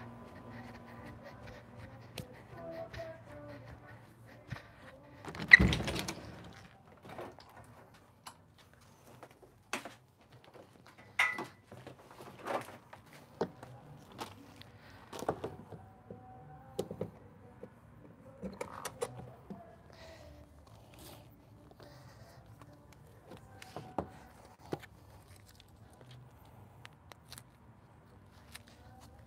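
Scattered knocks, clicks and clatter, with one loud thump about five and a half seconds in, over a faint steady hum.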